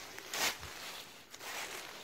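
Crinkling and rustling of a plastic map bag being handled, with one short, louder crinkle about half a second in and softer rustles after.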